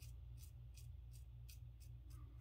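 Faint, quick scrapes of a vintage Gem Damaskeene safety razor with a Personna double-edge blade cutting lathered stubble on the cheek, about five short strokes in two seconds.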